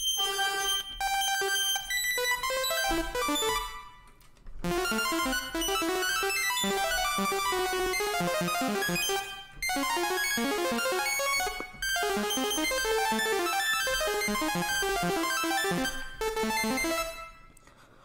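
Beat intro played back from FL Studio: keys and synth playing a progression of ninth chords, with busy stacked notes. The playback cuts out briefly a few times and stops near the end.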